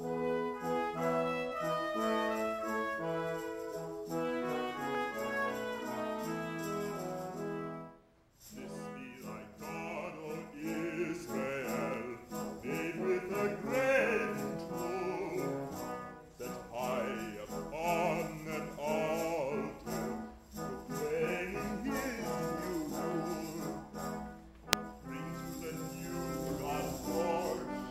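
Live chamber-opera music: brass instruments play sustained chords for about eight seconds, then after a short break a man sings a wavering operatic line over the instrumental ensemble. A single sharp click comes near the end.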